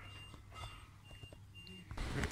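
Faint electronic beeping: short high beeps repeating evenly about twice a second, over a low steady hum.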